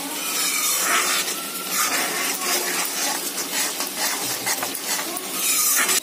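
A steel spatula scrapes and stirs a spice paste frying in oil in a heavy iron kadhai, with a sizzling hiss under uneven scraping strokes as the masala is roasted.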